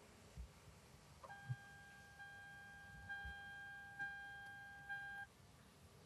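A faint, steady electronic beep tone with a few overtones, held for about four seconds. It starts just over a second in and cuts off suddenly shortly before the end.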